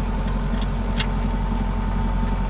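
Sailboat's engine running steadily under way, a low even drone, with a faint click about a second in.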